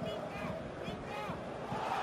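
Steady stadium crowd noise at a football match, with faint voices over it.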